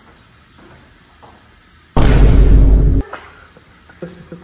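Quiet room tone, broken about two seconds in by a sudden, very loud, deep burst of noise that lasts about a second and cuts off abruptly.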